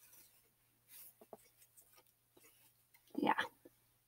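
Faint rustling of a piece of woven fabric being held up and handled, a few soft brushing sounds about a second in.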